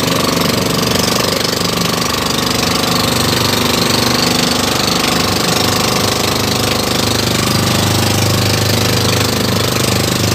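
Engine of a motorized outrigger boat (bangka) running loud and steady while the boat is under way at speed.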